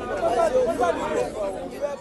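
A crowd of people talking at once: overlapping chatter with no single voice standing out. It drops away sharply right at the end.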